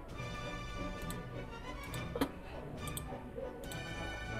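Background music with sustained tones, over which about five sharp computer-mouse clicks fall at irregular intervals, the loudest a little past the middle, as points of a spline are placed in CAD software.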